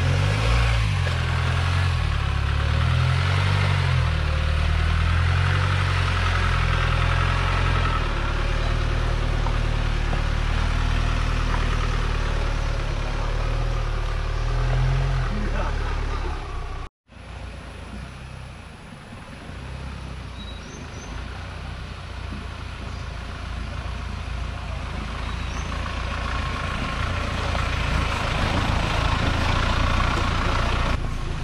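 Mahindra Thar's engine running as the 4x4 is driven along a rough, muddy forest track. It is loud and close at first, then after an abrupt cut it is quieter and grows steadily louder as the vehicle comes closer.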